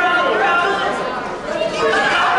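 Indistinct chatter of many overlapping voices from spectators in a large gym hall.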